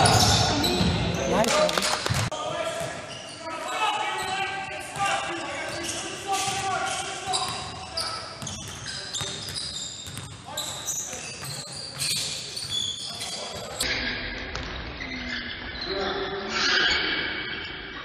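Basketball bouncing on a hardwood gym floor: repeated short bounces while it is dribbled, with voices echoing in a large gym.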